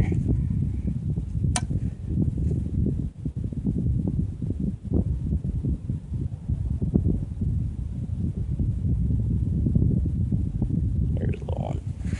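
Wind buffeting the microphone, a steady low rumble, with one sharp click about one and a half seconds in.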